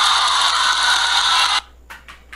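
A steady hiss-like noise that cuts off abruptly about one and a half seconds in, followed by a few soft clicks.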